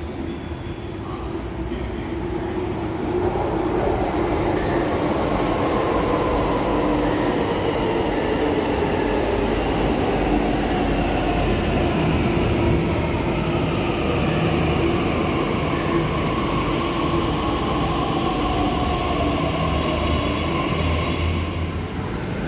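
A Delhi Metro electric train pulling into the station, its running noise building over the first few seconds and then holding steady. A whine from the train falls slowly in pitch as it slows.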